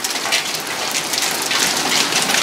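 Dime-sized hail falling hard: a dense, steady clatter of many small impacts.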